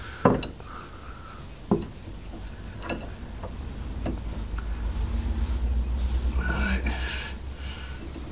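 Large adjustable spanner clinking against the metal of a car's steering joint as it is fitted and worked, three sharp clinks in the first few seconds. A low, fluttering rumble builds over the second half.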